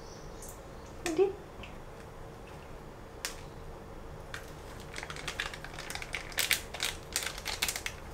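Small clicks and light crinkling of a foil matcha packet being handled and folded shut, growing busier about five seconds in, after a few soft taps of a spoon in the powder. A short voice-like sound rises once about a second in, over a faint steady hum.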